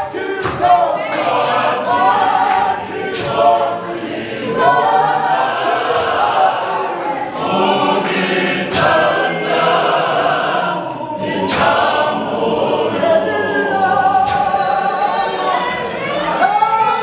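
A mass choir singing a gospel song together, many voices in harmony and unbroken throughout.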